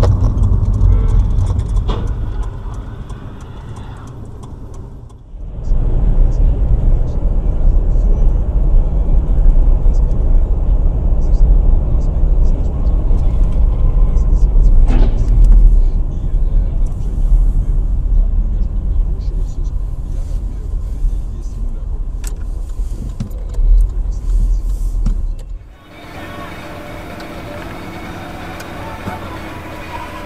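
Cars driving, heard through dashcam microphones: a steady low rumble of road and engine noise inside the cabin, which changes abruptly about five seconds in and again near the end as one recording gives way to another.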